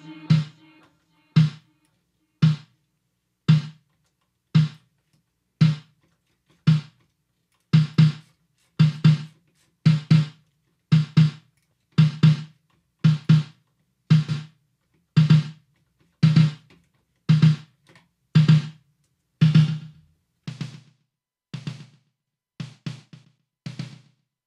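A single drum track playing on its own in a mix session: one low-tuned drum hit about every second, each with a full low body and a crisp top end. From about 20 seconds in the hits get quieter, with small extra hits between them.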